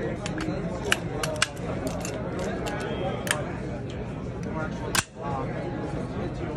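Sharp metallic clicks and clacks as a folding rifle is swung open and locked into firing position, the loudest snap about five seconds in, over a hum of crowd chatter.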